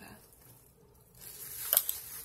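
Handling noise of small makeup items being put down and picked up: a soft rustle, then a sharp click near the end.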